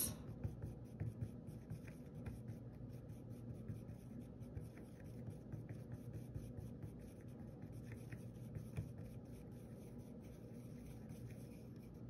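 Faint scraping and light ticking of a tool stirring acrylic paint thickened with gloss gel medium in a plastic palette well.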